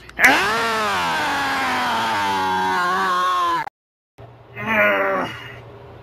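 A man's long, wordless yell of rage held for about three and a half seconds and cut off abruptly, then after a brief gap a second short shout.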